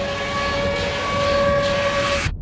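Trailer sound design: a loud, steady horn-like tone held over a dense rushing noise.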